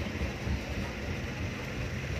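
Jeepney's engine and running gear giving a steady low rumble with road noise, heard from inside the open-windowed passenger cabin.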